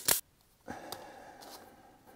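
Hand wire strippers snapping shut on electrical cable to strip its insulation: a loud sharp click at the start, then a quieter click followed by about a second of faint breathy noise.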